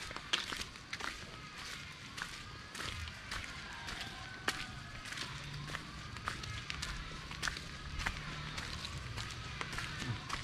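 Footsteps of someone walking along a dirt forest path, heard as short irregular steps, with a high chirping call repeating again and again in the background.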